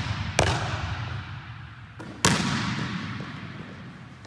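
A basketball banging hard on a hardwood gym floor, twice: once just after the start and again a little past two seconds in, each bang followed by a long echo in the large hall.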